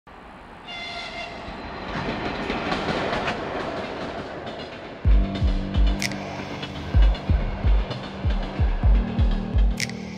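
Freight train rumble building in loudness, with a brief horn note near the start. From about five seconds in, music with deep, heavy bass hits comes in.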